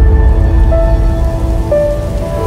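Channel logo sting: held synthesized musical notes over a dense, noisy low rumble, with a new higher note sounding about a third of the way in and another near the end.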